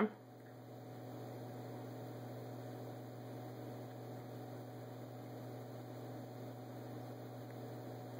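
A steady, faint electrical mains hum with a light hiss behind it.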